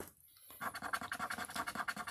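A coin scraping the latex coating off a scratch-off lottery ticket in rapid, regular strokes, starting about half a second in.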